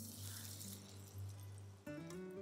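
Coated mushroom pieces sizzling as they go into hot oil for deep-frying, a faint steady hiss that cuts off suddenly near the end. Soft background music plays underneath.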